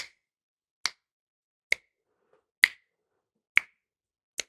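Finger snaps keeping a steady pulse, five sharp snaps evenly spaced about 0.9 s apart, marking the beat for a 3/4 rhythm dictation between sung patterns.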